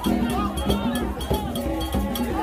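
Many voices singing together over a metal bell struck in a steady rhythm, about three strikes a second, with other percussion.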